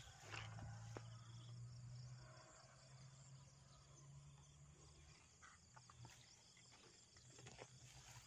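Near silence: faint outdoor ambience with a low steady hum that fades about halfway through, and a few faint clicks.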